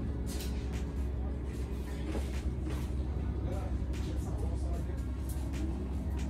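Steady low rumble with faint background voices and a few light clicks.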